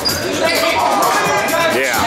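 A basketball being dribbled on a gym floor during a game, with players' and spectators' voices in the hall.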